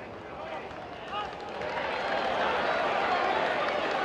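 Small football crowd shouting, the noise swelling about a second and a half in and staying up as the attack goes forward.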